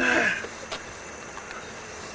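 A short, loud vocal cry that falls in pitch, lasting about a third of a second at the very start. After it comes a steady hiss with a faint click.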